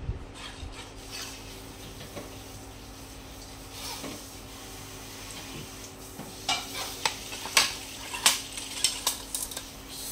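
Hands handling a fishing rod, rubbing and turning the blank, with a run of sharp clicks and knocks in the last few seconds. A steady low hum sits underneath.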